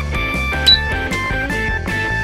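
Honestly Cute toy cash register's handheld scanner giving a short high beep about two-thirds of a second in, over light background music.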